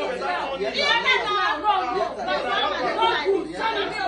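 Several people talking at once, overlapping chatter with no other sound standing out.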